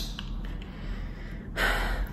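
A woman's quick, audible in-breath near the end, taken just before she speaks. A single sharp click at the very start.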